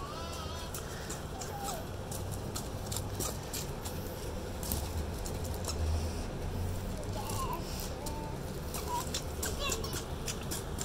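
Footsteps crunching on loose gravel, with repeated short crackles, and a toddler's brief babbling now and then.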